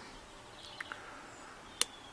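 Hook pick and tension wrench working the pins inside a brass padlock's pin-tumbler cylinder: a faint tick just under a second in and one sharp metallic click near the end.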